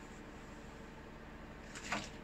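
Quiet room tone, with a couple of faint clicks of parts being handled near the end.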